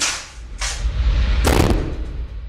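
A door slammed shut once: a single hard bang with a deep thud about a second and a half in, after a shorter burst of noise about half a second in.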